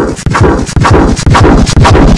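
Heavily distorted, clipped effects audio: a loud, bass-heavy sound chopped into rapid stutters about four times a second, each with a falling pitch sweep.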